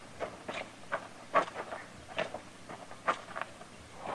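Radio-drama sound effect of men's footsteps walking at a steady pace, roughly two steps a second.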